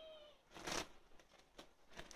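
Tabby cat meowing once, a short call that rises and falls in pitch, followed about half a second in by a brief, louder burst of noise.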